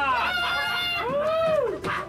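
A man's loud, high-pitched laughter: a few short shrieking notes, then one long note that rises and falls.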